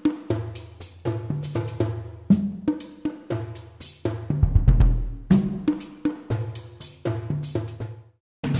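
Cinematic percussion from Soundiron's Apocalypse Percussion Elements sample library in Kontakt, playing a rhythmic phrase of drum hits with ringing low tones. A deep low boom swells about four and a half seconds in.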